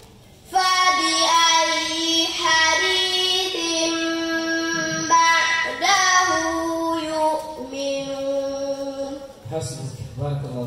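A young girl's voice reciting the Quran in melodic chant (tilawa), starting about half a second in after a brief pause. She holds long notes with ornamented turns, then breaks off shortly before the end.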